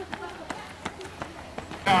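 Runners' footsteps passing on the road: a few scattered, light footfalls over a faint murmur of spectators. Near the end, a motor scooter's engine comes in with a steady hum.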